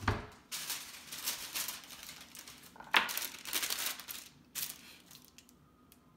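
A sheet of parchment paper rustling and crinkling in bursts as it is handled and spread out, with one sharper crackle about three seconds in. A low thump right at the start.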